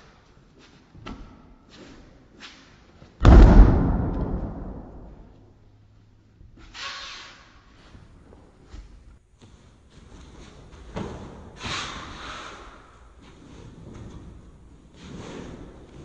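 A body thrown with a two-handed shoulder throw landing on the mat: one loud, sudden thud about three seconds in that dies away over a couple of seconds. Quieter scuffs and smaller thumps from feet and gi follow later.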